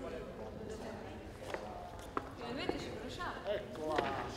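Indistinct overlapping voices of people talking in an auditorium, with a few sharp clicks about one and a half and two seconds in.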